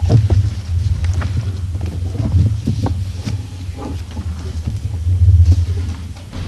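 Low, uneven rumble picked up by the table microphones, with scattered small knocks and shuffles as council members move and handle things at the table. It swells loudest near the end.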